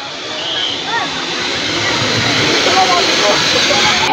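Wheels of a sky cycle rolling along a steel cable: a steady rushing rumble that grows louder as the ride comes closer, with faint children's voices behind it.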